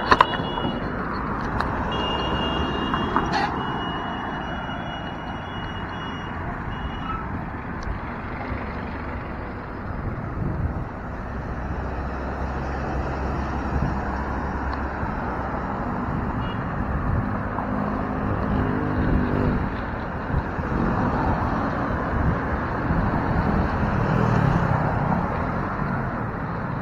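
Steady wind and road noise from riding a bicycle in city traffic, with the engines of passing motor vehicles rising about halfway through. A high electronic tone sounds during the first several seconds.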